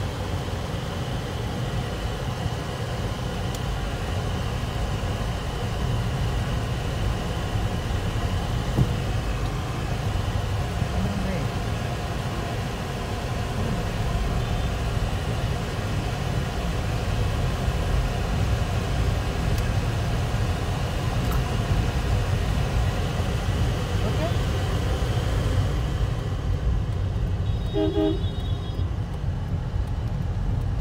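Car cabin noise while driving in city traffic: a steady low rumble of engine and tyres. A short tone sounds about two seconds before the end, such as a vehicle horn.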